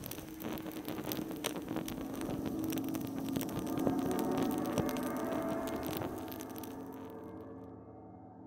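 Logo sound effect of crackling fire over a low, steady humming drone. The crackling stops about six seconds in, leaving the drone to fade away.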